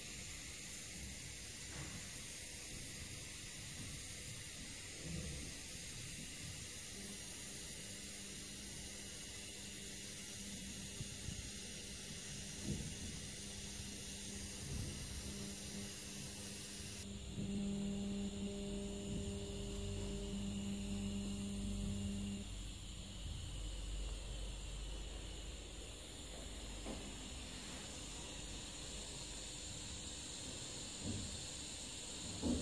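Argon-shielded TIG welding arc on a stainless steel pipe, a steady soft hiss with a low hum. The hum is stronger for a few seconds in the middle.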